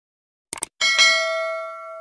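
Sound effect of a quick mouse double click, followed by a bright bell ding that rings and fades out over about a second and a half.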